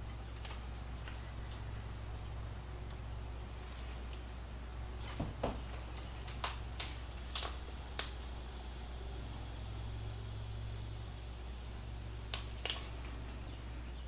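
Low steady hum with a few light clicks and taps, a cluster in the middle and two more near the end, as chopped tomatoes are placed by hand into a glass trifle dish from a small bowl.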